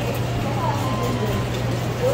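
Shop ambience: a steady low hum with faint, indistinct voices in the background.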